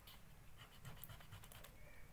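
Faint, quick strokes of an eraser rubbing out a pencil line on paper.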